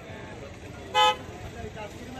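A single short vehicle-horn toot about a second in, over a steady murmur of background voices.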